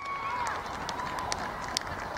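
Open-air sideline sound at a football match: distant voices over a steady hiss, with several sharp clicks scattered through it.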